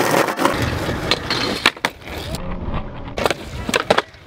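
Skateboard wheels rolling, with about four sharp clacks of the board striking and landing.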